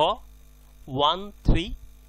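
A man's voice says a few short words. Under it runs a steady electrical mains hum.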